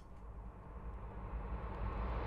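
A low rumbling noise with a faint hiss above it, slowly growing louder.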